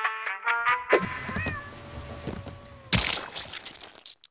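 Brass music stabs that end with a loud hit about a second in. A short, wavering, meow-like cry follows over a steady tone, and near the end a burst of rushing noise cuts off suddenly.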